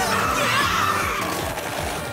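Action cartoon soundtrack: music with a steady beat under a loud, noisy rushing sound effect that falls away through the first half.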